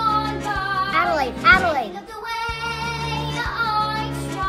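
A girl singing a show tune over a recorded backing track. She holds long notes, with a couple of quick swoops up and down in pitch about a second in.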